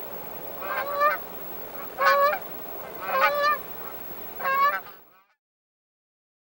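Flock of Canada geese honking in flight: four bursts of honking about a second apart. The sound cuts off abruptly about five seconds in.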